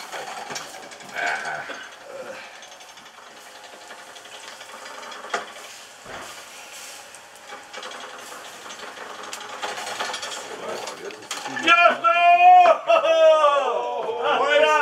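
Faint background murmur and scattered light clicks for most of the time. About eleven seconds in, loud, drawn-out voices start calling out, their pitch sliding up and down.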